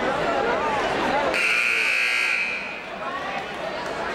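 Gym scoreboard buzzer sounding once, a steady buzz lasting over a second, starting about a second in, over crowd chatter. With the clock at 8:00 in period 4, it marks the end of the break before the fourth quarter.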